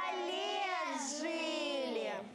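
Children's voices singing the long, drawn-out closing phrase of a Russian kolyadka (Christmas carol). The phrase rises in the middle and falls away at the end.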